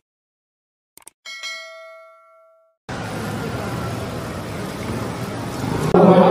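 Subscribe-button animation sound effect: a quick double mouse click about a second in, then a bell-like notification ding that rings and fades over about a second and a half. About three seconds in, a steady noisy background cuts in abruptly.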